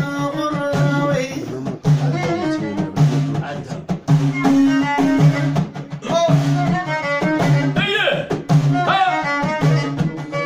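Live folk music: a violin held upright on the knee bows the melody over frame drums beating a steady rhythm.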